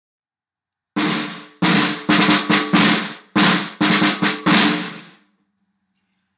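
Snare drum crush rolls: about nine short buzz rolls, each a multiple-bounce stroke with both sticks landing together, starting about a second in and dying away quickly, in an uneven rhythm. The drum's low ring lingers faintly after the last one.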